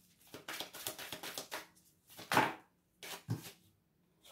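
A deck of oracle cards being shuffled by hand: a quick run of soft clicks as the cards slip against each other, then two louder taps of cards a second apart.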